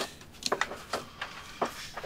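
A few light, scattered clicks and taps of mussel shells being handled over a metal tray.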